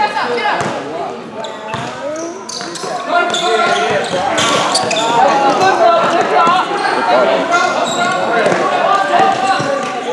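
Voices calling out and chattering throughout, echoing in a large gym, with a basketball bouncing on the court floor as it is dribbled.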